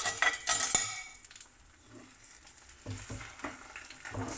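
Metal slotted spoon clinking and scraping in a frying pan as it stirs grated coconut into ragi batter, with a faint sizzle. The scraping is strongest in the first second, and a few soft knocks come near the end.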